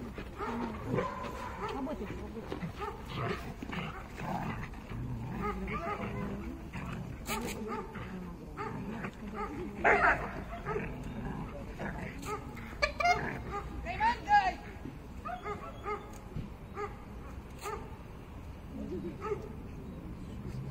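A dog barking now and then over people's voices, with the loudest sound about halfway through.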